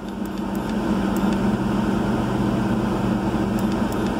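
Steady mechanical hum and rushing noise inside a vehicle cabin, with a lower hum tone that comes in about a second and a half in and drops out near the end.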